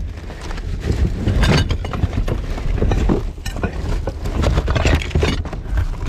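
Gloved hands rummaging through rubbish in a dumpster: a busy run of rustling and clattering as plastic, paper, cardboard and containers are shifted about, with a steady low rumble underneath.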